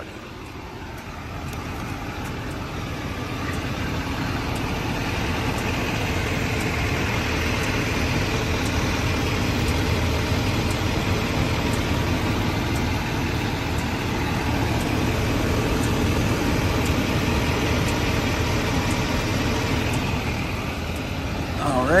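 A vehicle engine idling steadily, growing louder over the first few seconds and then holding even.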